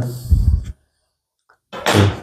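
Brief soft knock and scrape of a steel ruler being lifted and handled on a wooden soundboard, just after a spoken phrase ends; a man's voice starts again near the end.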